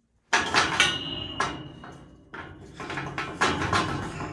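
Steel maternity-pen gate being worked: a run of metal clanks and rattles as the suckling gate swings and its bolt latch is handled, with one clank ringing on for about a second. It starts a moment in, after a brief silence.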